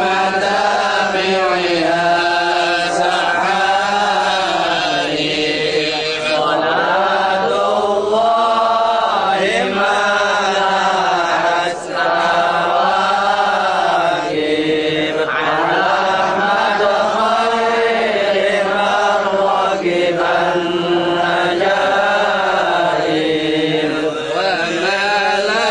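Men's voices chanting a melodic Arabic devotional text from a Maulid recitation in long, flowing phrases, with short breath pauses between them.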